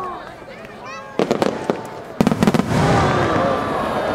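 Starmine fireworks: a quick cluster of sharp bangs about a second in, then a louder volley of deep booms a second later. Voices rise after the booms.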